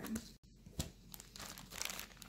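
Clear plastic sleeve of a cross-stitch pattern crinkling as it is handled and moved, in several short bursts.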